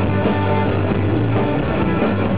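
Live rock band playing at full volume: electric guitars over bass and drums, heard from the audience floor.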